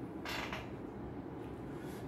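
Faint creak of a chair over low room noise, with a brief soft noise about a third of a second in.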